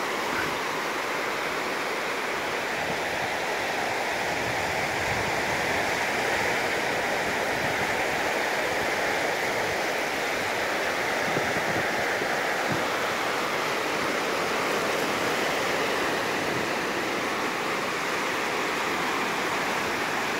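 Ocean surf washing in on a beach, a steady rush of water noise.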